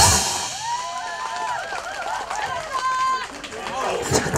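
Backing music with a drum beat cuts off at the very start, followed by several people's voices talking and calling out over one another.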